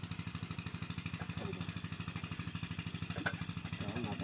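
An engine running steadily with a fast, even chugging pulse, and a single sharp click about three seconds in.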